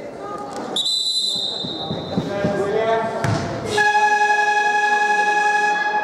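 A referee's whistle blown once, about a second in and held for over a second, then the arena's electronic game horn sounding loudly and steadily for over two seconds near the end, the signal that a timeout is over, ringing in a large gym.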